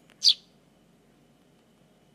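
A fledgling Eurasian tree sparrow gives a single short, high chirp about a quarter second in. It is the chick's begging call for food, which it keeps giving.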